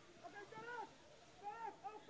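Faint, distant voices calling out in two short spells, about half a second in and again near the end.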